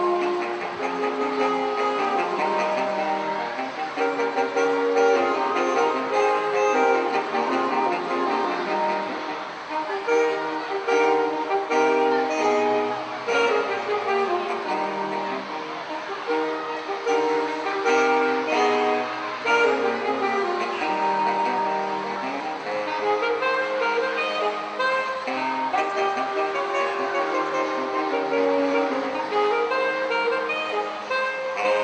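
Saxophone quartet, a baritone saxophone among the instruments, playing a piece live, several held parts moving together in harmony.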